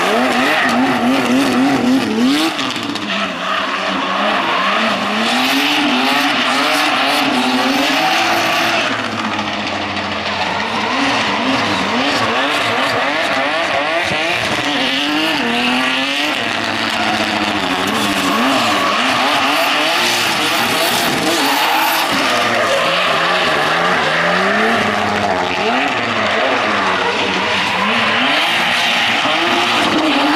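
Drift car's engine revving hard, its pitch rising and falling in quick repeated waves as the throttle is worked through the slides, over a constant screech of spinning, sliding tyres.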